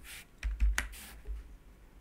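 Several sharp clicks of a computer keyboard and mouse in the first second, with a couple of dull low knocks under them, then quiet room tone.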